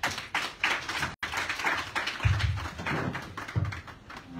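A small group of people applauding, the individual claps distinct and overlapping.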